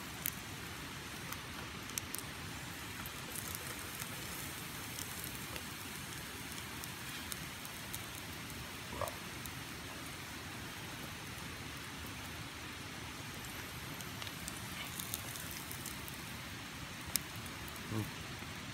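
Butter sizzling steadily around pieces of oyster mushroom frying in a small metal pot on campfire coals, with a few faint pops and crackles scattered through it.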